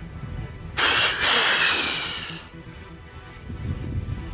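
Snort-wheeze call imitating a whitetail buck: a sudden hiss of forced air about a second in, a brief break, then a longer hiss that fades out by about two and a half seconds in.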